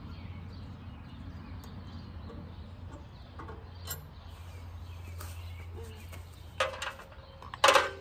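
Metal knocks and clinks from hand work on the Farmall A's engine parts, with two sharp, louder clanks near the end, over a steady low hum.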